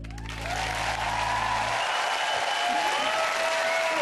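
Studio audience applauding and cheering at the end of a ballroom dance. The band's last held chord stops about two seconds in.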